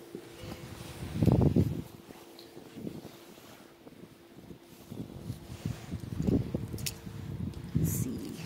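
Rustling and thumps of a phone being handled and rubbed against clothing as it moves, loudest about a second and a half in and again near the end, over a faint steady hum.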